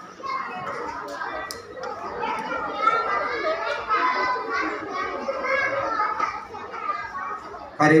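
Many young children's voices chattering and calling out at once in a large hall. Just before the end a louder, closer voice cuts in with "are you… yeah".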